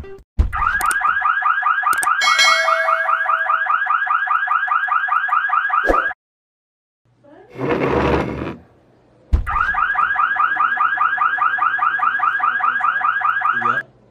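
Car alarm siren wailing in fast rising sweeps, about five a second, in two runs of several seconds each with a short break between them. A brief low rumble fills part of the break.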